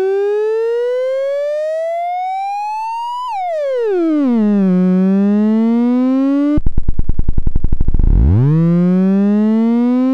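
Serge modular synthesizer oscillator tone shaped through the Extended ADSR, buzzy with many overtones and gliding in pitch. It rises slowly for about three seconds, then falls quickly and creeps up again. Around seven seconds in the pitch drops so low that it breaks into a fast, even pulsing, then sweeps back up.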